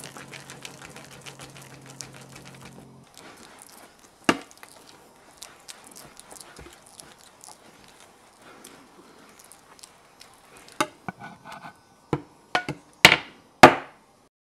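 Glass muller worked over pigment paste on a glass slab: a faint gritty scraping with scattered small clicks. A sharp knock comes about four seconds in, and several louder sharp knocks fall in the last three seconds.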